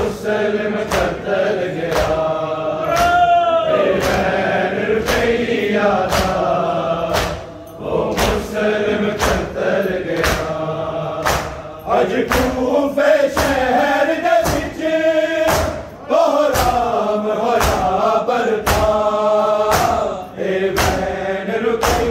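A group of men's voices chanting a noha, with the steady slap of hands beating on bare chests (matam) keeping time at about two strikes a second.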